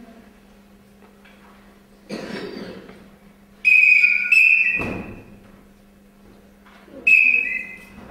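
Karate referee's whistle blown in two short shrill blasts back to back, then once more about three seconds later, signalling during a kumite bout. A short noisy burst comes about two seconds in, before the first whistle.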